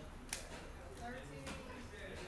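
Timing chain and cam sprocket on a 3.5 V6 being handled during fitting: one sharp metallic click about a third of a second in, and a fainter click about a second later. Faint talk in the background.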